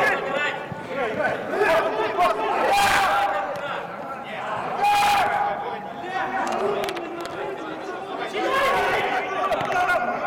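Footballers' voices shouting and calling to one another during play, several at once, inside a large air-supported dome; two loud drawn-out shouts stand out about three and five seconds in.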